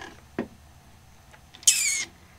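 A small click, then near the end a short high-pitched squeak that falls slightly in pitch.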